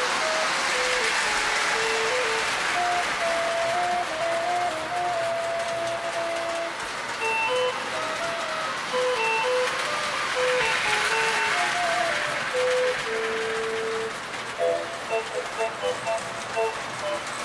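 A simple electronic tune, one note at a time, from a toy circus train set, over a steady hiss.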